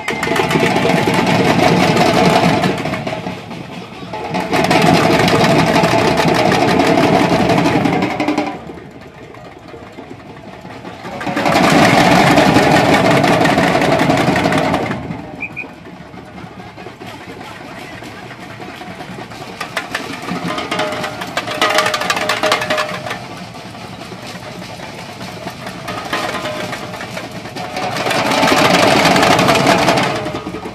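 Samba batucada percussion band playing. Loud full-band passages of a few seconds alternate with quieter stretches, five loud blocks in all.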